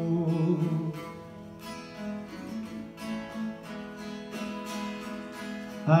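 Acoustic guitar strummed quietly between sung lines of a folk ballad. A held sung note ends about a second in, and the voice comes back in at the very end.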